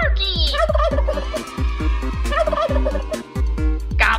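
Turkey gobbles set into a children's song, over a steady beat and bass line.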